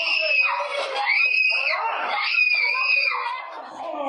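Children screaming in distress: three long, high-pitched screams in a row.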